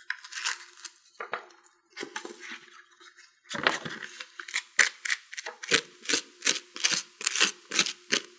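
Sandpaper rubbing on styrofoam to smooth the rough cut edges of a shape, in short regular strokes about three a second that begin about three and a half seconds in. Before that come scattered squeaks and crackles of styrofoam being pushed out of a metal cookie cutter.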